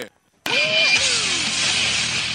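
A brief gap, then a produced radio-station jingle begins: a steady rushing noise with a few sliding tones over it.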